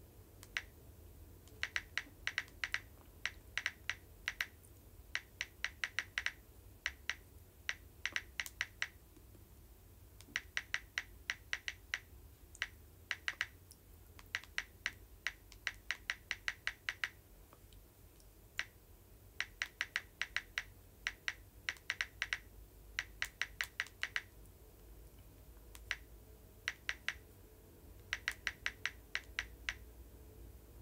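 Typing on a smartphone: quick runs of light, sharp taps, several a second, in bursts of a second or two with short pauses between.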